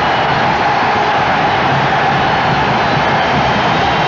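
Football stadium crowd cheering a goal: a loud, steady wall of noise with no breaks.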